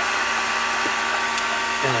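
Heater fan blowing steadily in a car cabin: an even rush of air with a faint motor hum, warming a cold car. Two small clicks sound near the middle.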